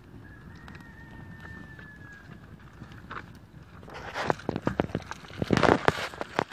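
Handling and rustling of papers being set alight, with a quick run of sharp clicks in the second half and a short, loud noisy burst just before the end as the fire catches.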